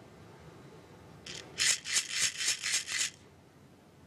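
A small hand-held rattle shaken in a quick run of about nine short, dry shakes, roughly five a second, starting about a second in and lasting about two seconds.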